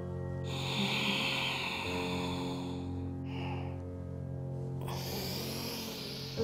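Deep audible breathing over soft instrumental background music: a long exhale lasting about two and a half seconds, a short breath after it, then an inhale starting near the end, in time with cat-cow yoga movements.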